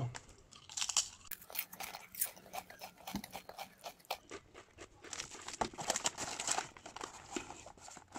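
Thai pepper Mega Line potato chips being bitten and chewed: a run of irregular crunches from about a second in until near the end.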